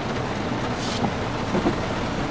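Steady cabin noise inside a car driving on a wet road: engine and tyre rumble, with a brief hiss about a second in.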